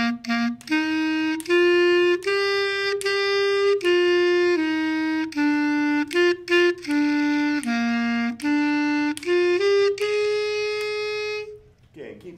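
A student clarinet plays a short beginner's exercise melody in separate tongued notes that step up and down, ending on one longer held note that stops near the end.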